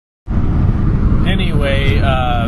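A cut to dead silence at the start, then a steady low rumbling background noise comes back, with a man's voice starting again about a second and a half in.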